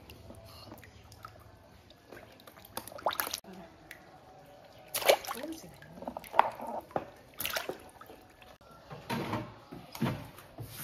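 Water splashing and dripping in a tub of live fish as hands stir the water, in short irregular bursts.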